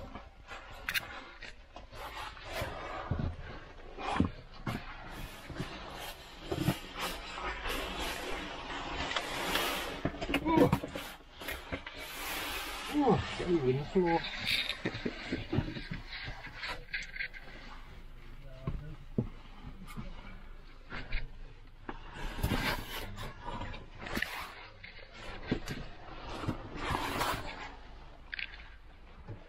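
Scrapes and knocks of cavers climbing up a narrow rock rift, with brief indistinct voices.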